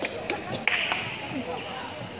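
Badminton rackets striking shuttlecocks: several short sharp hits, with the noise of a busy sports hall and voices behind.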